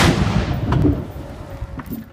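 The low rumble of a blast dying away after its loud onset, falling steadily in level over two seconds. It is broken by a few sharp knocks about two-thirds of a second in and again near the end.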